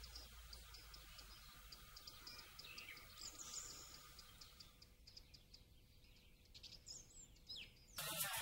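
Faint outdoor ambience with small birds chirping: a quick run of short high ticks in the first few seconds, then a few sliding chirps around the middle and near the end.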